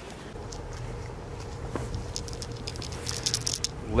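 Quiet outdoor background: a low steady rumble with a faint hum, and a quick run of small clicks and taps near the end.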